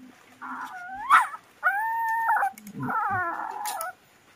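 Puppy crying: about four high-pitched whimpering cries, one rising sharply about a second in and one held steady in the middle, as ticks are pulled from around its ear with tweezers and it hurts.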